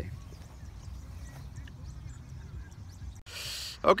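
Outdoor ambience: a steady low wind rumble on the microphone with faint, distant bird calls, and a short hiss just before the voice comes back near the end.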